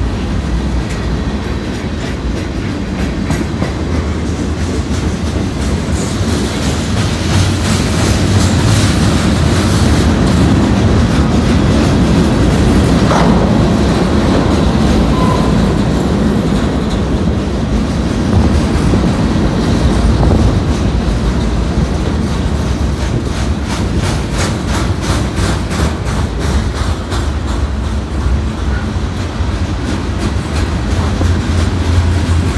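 Freight cars of a long CSX train rolling past close by on street-running track: a steady rumble of steel wheels on rail with rhythmic clickety-clack over the rail joints, the clicks coming thickest near the end.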